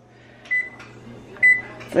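Two short electronic beeps about a second apart, from keypad presses on a timer being stopped and reset, over a low steady hum.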